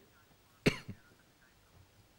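A single short cough, about two-thirds of a second in; the rest is quiet.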